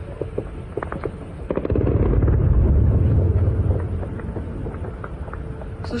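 Distant air-defence fire against attacking drones: a few scattered sharp cracks, then about a second and a half in a rapid burst that runs into a low rolling rumble, loudest for about two seconds before fading away.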